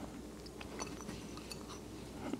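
Faint, scattered small clicks and rustles of a gloved hand picking sun-dried tomato pieces out of a small bowl and dropping them into a muffin pan's cups, over quiet room tone.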